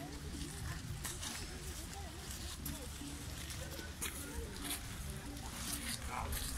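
Indistinct voices of people talking over a steady low rumble, with a few sharp clicks of metal pétanque boules knocking together as players pick them up.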